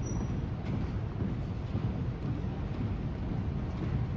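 Steady low rumble in a large gym hall, under the muffled footsteps of a rifle drill squad marching on a hardwood floor, with a brief high squeak right at the start.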